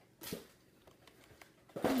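A brief rustle of a small cardboard candy-kit box being handled, once, about a quarter of a second in.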